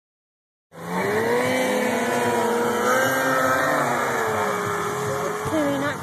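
An engine running steadily, its pitch wavering slightly, starting just under a second in and fading out about five and a half seconds in.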